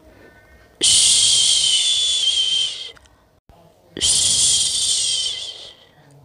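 A person's long 'shhh' shushing sound to lull a baby to sleep, given twice, each lasting about two seconds, with a short quiet pause between.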